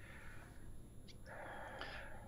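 Faint background noise of an open remote-call audio line, a low hiss that thickens into a soft rustle in the second half, with no speech.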